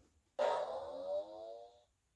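An electronic sound effect from a children's sound book's button panel, played for the word 'jump': one pitched sound about a second and a half long that starts loud and fades out.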